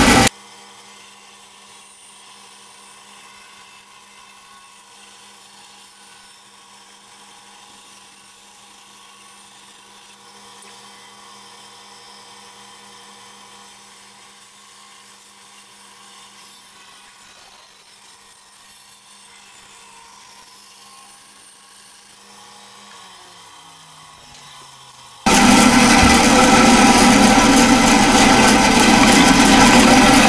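Band saw cutting through a wooden carving blank: loud, rough cutting noise at the very start, then again from about 25 seconds on. In between the sound drops to a faint steady hum whose pitch sags a couple of seconds before the loud cutting returns.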